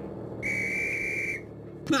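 A single whistle blast: one steady high tone held for about a second.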